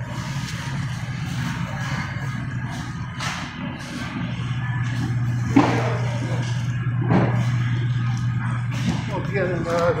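Busy supermarket ambience: indistinct voices and background music, with a steady low hum that strengthens about four seconds in and a few light knocks and rustles.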